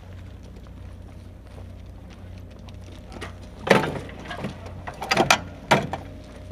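Sharp knocks and clanks of crew handling an M777 howitzer's breech and loading tray, about five of them in the last two and a half seconds, the first the loudest, over a steady low hum.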